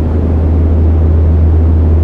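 A loud, steady low drone with a rough, rumbling texture.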